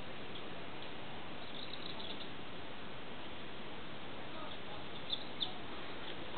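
Faint bird chirps over a steady hiss of background noise, with two short, sharper chirps near the end.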